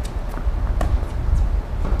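Tennis balls struck by rackets and bouncing on a hard court during a rally: a few sharp pops, the loudest about a second in, over a steady low rumble.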